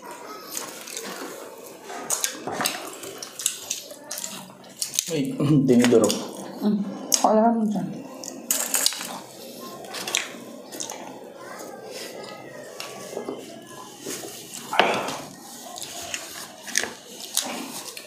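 Close-miked eating sounds: chewing and crunching of fried food, with clicks of a fork against the plates and board scattered throughout.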